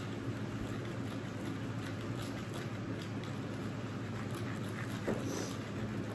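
Faint small tapping and scraping from mixing candy powder and water in a small plastic tray by hand, over a steady low room hum.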